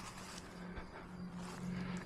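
Quiet outdoor background with a faint, steady low hum.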